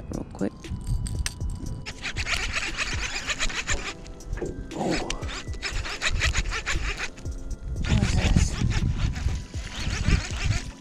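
Gusty wind buffeting the microphone in uneven rumbling surges, over background music.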